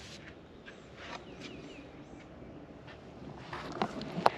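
Faint outdoor background with a small bird giving three short falling chirps about a second and a half in, and a few light handling knocks near the end as the camera is moved.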